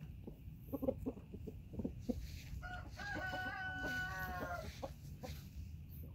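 A rooster making a few short clucks, then crowing once in a drawn-out, fairly even call of about two seconds near the middle.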